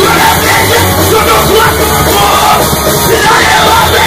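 Punk rock band playing loud and fast on drum kit and electric bass, with a singer yelling over it.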